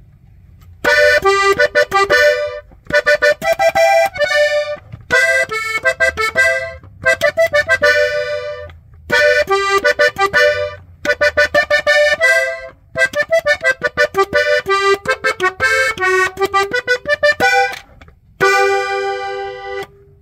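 Hohner Panther three-row diatonic button accordion in G playing a quick melodic run on the treble buttons, phrase after phrase with short breaks, ending on one held note.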